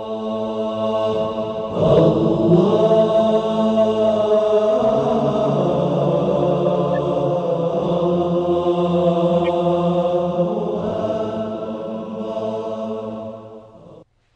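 Wordless chanting voices holding long, steady notes in a layered drone, shifting pitch a few times and fading out near the end.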